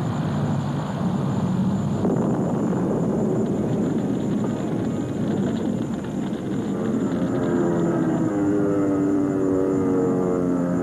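Piston-engined propeller aircraft running, a steady rough engine din. In the last few seconds, steady held tones come in over it.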